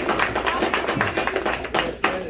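A small group of people applauding, with many hands clapping densely at once and some voices mixed in.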